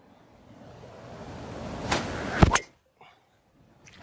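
A golf driver striking a ball: one sharp, loud crack about two and a half seconds in, with a smaller click just before it. It is preceded by a rushing noise that builds steadily until the strike.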